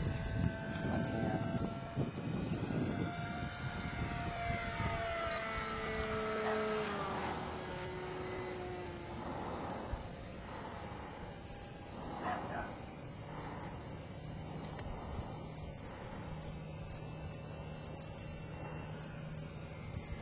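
Whine of a radio-controlled flying boat's five-turn electric motor in flight. It slides steadily down in pitch over several seconds as the plane is brought around to land, then fades to a fainter steady hum.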